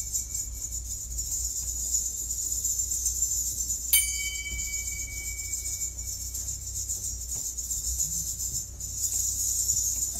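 Drum-kit cymbals played softly in a steady high wash, with one sharp stroke about four seconds in that leaves a bell-like ring for a couple of seconds. A low hum runs underneath.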